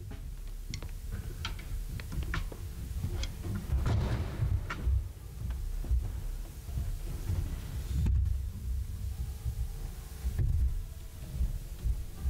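Microphone handling noise and movement on a church stage: irregular low thuds and bumps with scattered light clicks and knocks, over a faint steady hum.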